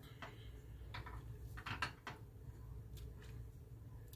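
Silicone spatula stirring sauce in a small stainless steel saucepan, with a few faint taps and scrapes against the pan over a low steady hum.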